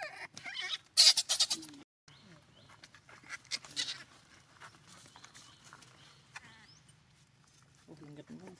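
Baby pigtail macaque crying out in shrill, bleat-like cries. The cries are loudest in a burst of screams about a second in, with more cries around three to four seconds in.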